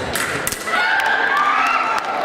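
Sharp knocks and thuds of fencers' feet and blades on a fencing piste, heard with a drawn-out, voice-like call in a large hall.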